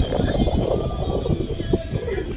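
Wind buffeting an outdoor phone microphone: a loud, uneven low rumbling noise.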